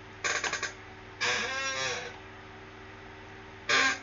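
A man laughing: a quick run of short bursts, then a drawn-out voiced sound about a second in, with another burst near the end, over a steady low hum.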